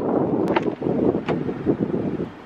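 Wind buffeting the microphone of a handheld camera, an uneven rushing, with a couple of brief clicks.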